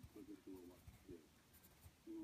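Faint pencil strokes scratching on paper as a drawing is sketched, with muffled talk in the background.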